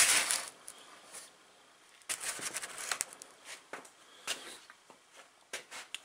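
Handling noise of a seized vintage Homelite Model 500 chainsaw being turned over and set down on a wooden workbench by gloved hands: a rub at the start, then, from about two seconds in, a cluster of short knocks and scrapes of the saw's metal on the bench, and a few light clicks near the end.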